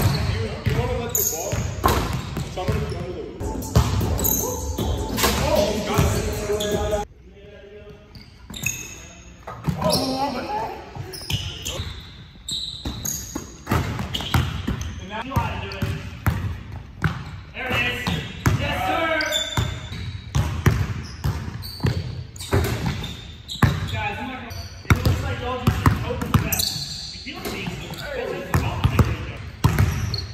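Basketballs bouncing and thudding on a hardwood gym floor, in short sharp knocks that ring out in a large echoing gym, mixed with people's voices.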